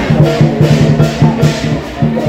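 Loud festival music with a fast, steady percussion beat, about four strikes a second, over steady low tones.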